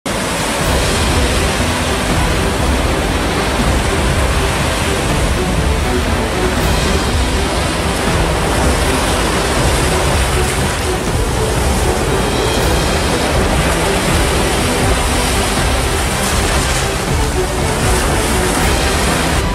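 Waves breaking on a beach, a steady wash of surf, mixed with background music.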